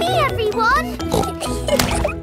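Light children's cartoon music with the cartoon pig Peppa laughing over it.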